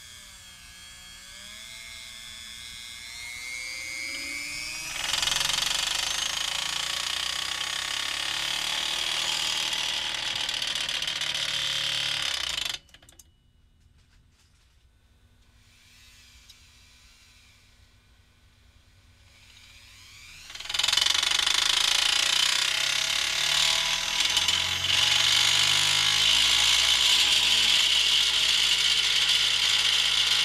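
Dremel rotary tool with a silicone rubber wheel pressed against a disc rig to spin it up: a whine that rises in pitch, then loud steady whirring. The whirring cuts off suddenly about thirteen seconds in, leaving a quiet stretch, then builds back up about twenty seconds in and runs on loud.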